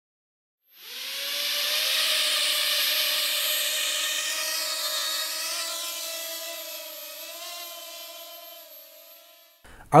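Quadcopter drone's propellers buzzing in a steady whine as it flies. The sound swells in about a second in, then slowly fades away and cuts off just before the end.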